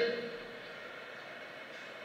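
Faint steady room noise of a hall with a PA microphone open. A man's amplified voice trails off just at the start.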